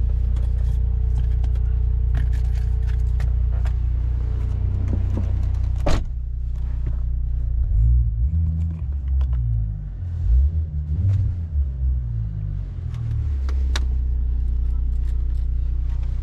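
Low, steady rumble of road and engine noise heard inside the cabin of a Brabus-tuned Mercedes on the move. There is a sharp click about six seconds in, and a deeper low hum that shifts in steps from about eight to thirteen seconds.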